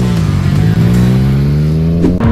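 Yamaha MT-09's three-cylinder engine pulling away from a stop: its note dips briefly near the start, then climbs steadily as the bike accelerates.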